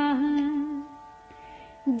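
A woman chanting a Sanskrit shloka in a melodic singing style. She holds one long note that fades out about a second in. Faint steady musical accompaniment carries through the short pause, and the singing resumes near the end.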